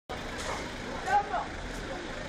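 Busy street-market ambience: a steady hubbub of people's voices, with a car driving slowly past close by. A couple of louder voices stand out about a second in.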